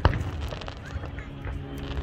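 A distant aerial firework shell bursting, with one sharp bang right at the start, followed by a low rumble.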